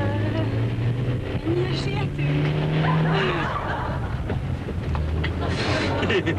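Nissan Almera's engine heard from inside the cabin while driven hard. Its note steps up about a second and a half in, then drops around three seconds in and again near five seconds, as the gears change.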